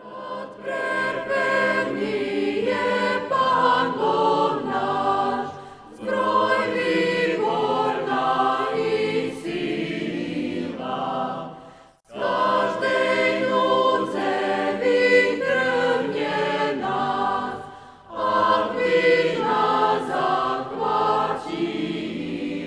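A choir singing a sacred piece in phrases of about six seconds, each phrase fading before the next begins, with a brief full stop about halfway through.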